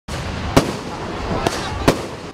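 Aerial fireworks going off: three sharp bangs, about half a second, a second and a half and just under two seconds in, over a steady noisy rumble of the display.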